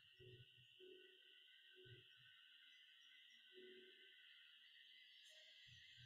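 Near silence, with only a faint steady high-pitched hum.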